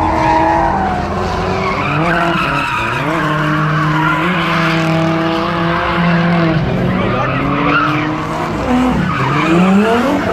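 Drift car's engine revving hard and held at high revs while its tyres screech and skid on the asphalt. The engine note drops about seven seconds in, dips sharply near the end, then climbs again.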